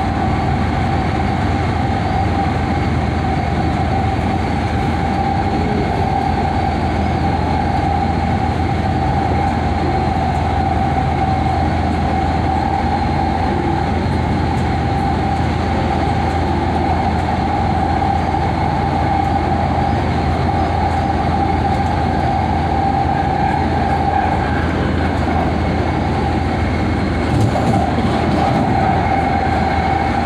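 LA Metro C Line light-rail train running at steady speed, heard from inside the passenger car: an even rumble of wheels on rail with a constant high hum running through it. A brief click comes near the end.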